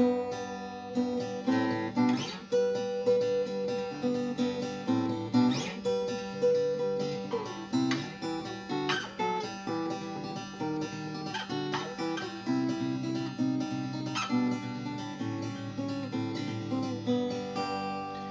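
Sears Silvertone flat-top acoustic guitar being played: a continuous run of plucked notes and chords over a bass line. The guitar has just been set up after a neck reset and refret, with a bone nut, saddle and bridge pins.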